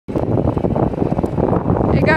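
Wind buffeting the microphone on a moving electric scooter: a loud, uneven low rumble with no engine tone.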